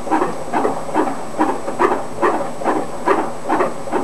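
Fetal heartbeat through a Doppler fetal heart monitor's speaker, beating steadily at about two and a half beats a second. Nice and strong and regular: a healthy fetal heart rate.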